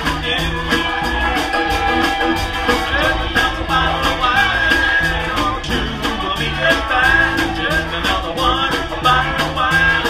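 A country band playing, with a bass line stepping from note to note under guitar and a steady beat.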